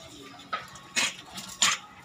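A dog barking three short times, about half a second apart.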